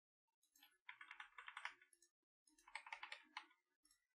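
Faint computer keyboard typing: two short runs of rapid key clicks, one about a second in and another near three seconds.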